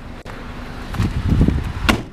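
Wind buffeting the microphone and rustling as someone climbs out of the car, then the driver's door of a 2002 Honda Civic Si hatchback swung shut with one sharp click near the end.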